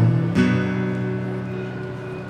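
Acoustic guitar's closing chord: strummed once about a third of a second in, then left ringing as it slowly fades.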